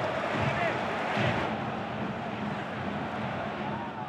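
Football stadium crowd: a steady din of many voices from the stands, with a few single shouts rising briefly above it near the start.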